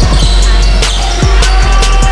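Background music with a heavy, deep bass line, held synth notes and a steady drum beat whose low kicks drop in pitch.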